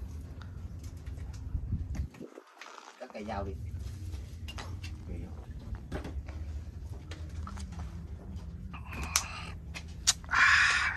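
Faint background voices over a steady low hum, with scattered light knocks. The hum drops out for about a second roughly two seconds in.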